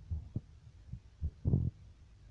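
Water sloshing in a plastic tub as a child's face dunks in to bite at floating apples: a few dull, low thumps, with a louder slosh about one and a half seconds in.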